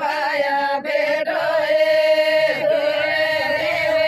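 A group of women singing a chant-like song in unison, holding long notes, with brief breaks about a second in.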